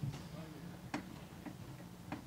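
A few faint, sharp clicks at irregular spacing, the clearest about a second in, over a steady low hum.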